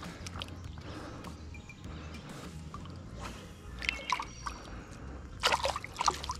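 Shallow creek water trickling and sloshing around a hand as a smallmouth bass is held in the water for release, with a brief splash about five and a half seconds in as the fish swims off.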